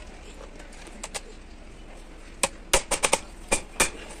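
A quick series of sharp metallic clinks, about seven in a second and a half in the second half, as a truck clutch disc is knocked and set against the cast-iron pressure plate.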